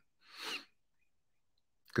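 A man's brief, soft breath out into a close microphone, swelling and fading within about half a second, with no voice in it.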